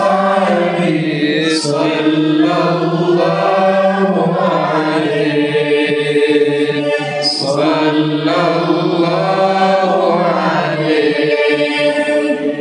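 A man chanting sholawat (Arabic devotional praise of the Prophet Muhammad) into a handheld microphone, in long drawn-out phrases with held notes and slow melodic glides.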